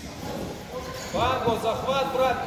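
A man's raised voice calling out in a large hall, starting about a second in, with no clear words.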